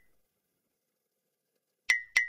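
Dead silence, broken near the end by a sharp click with a brief high ringing tone.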